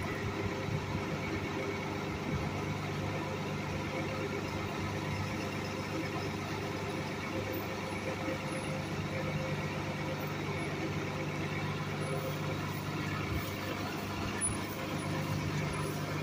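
A city transit bus's engine idling steadily close by, a constant even hum.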